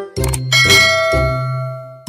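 A bright bell-like ding, the notification-bell sound effect of an animated subscribe button, rings out about half a second in and fades over about a second and a half, over light background music.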